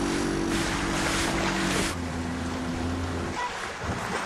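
Small motorboat's engine running under way, a steady hum over wind and water rush; the hum drops to a lower pitch about two seconds in and cuts off shortly before the end.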